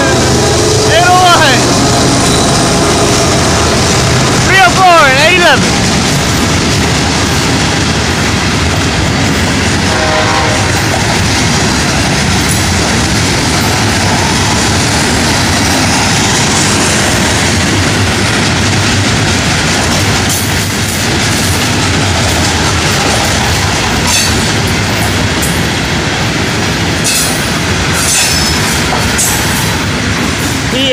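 Florida East Coast Railway freight train rolling past at close range: a steady rumble and rattle of freight cars on the rails. A few short wavering tones rise above it in the first seconds, and wheel clicks over the rail joints come near the end.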